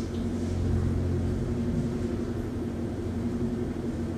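Low rumble under a steady background hum. The rumble is strongest in the first two seconds, then eases to a steady drone.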